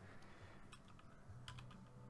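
A few faint clicks of computer keyboard keys being pressed, over near-silent room tone.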